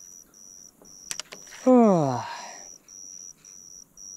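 Insect chirping, a steady high-pitched pulse repeating a couple of times a second. A few sharp clicks come just after one second in, then a man sighs, the sigh falling in pitch, loudest of all.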